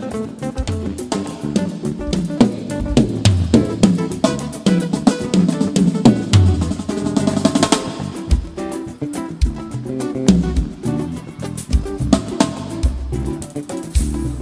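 Live band music led by a drum kit playing a busy passage of snare, rimshot and bass drum hits over low bass notes, without singing.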